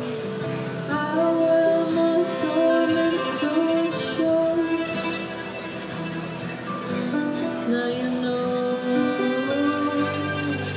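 Acoustic folk ensemble playing live: guitar, harp, cello and violin accompanying a woman singing slow held phrases, with the first phrase entering about a second in.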